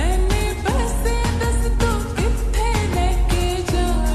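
A slowed-and-reverb lofi remix of a Hindi song: a sung vocal line over a steady beat with heavy bass.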